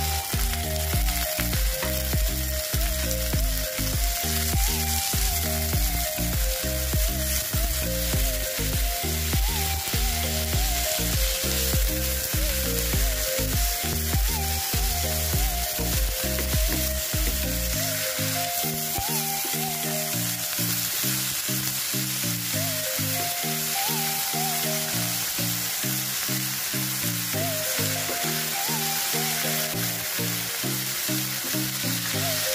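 Beef frying with chopped onion and garlic in a nonstick pan, sizzling steadily as it is stirred with a wooden spatula. Background music with a melody and bass plays over it; the deepest bass drops out a little past halfway.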